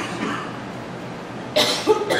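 A pause with low room noise, then a single short cough about one and a half seconds in.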